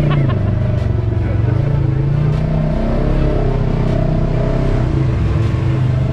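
Can-Am Maverick X3 RS side-by-side's three-cylinder engine running at low revs as the buggy crawls over dirt mounds, its low note rising and falling gently with the throttle.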